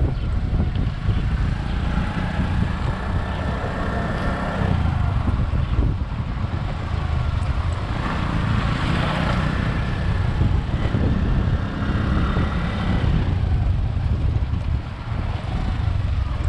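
A motorcycle being ridden, giving a steady mix of engine and road noise.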